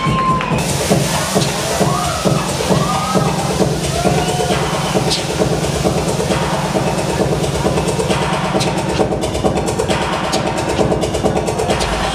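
Electronic dance music played loud with a steady beat, with people laughing and calling out over it near the start.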